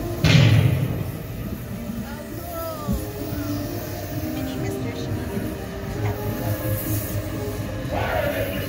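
Dark-ride soundtrack of character voices and music over the steady low rumble of the suspended ride vehicle, with a loud rush of noise about half a second in.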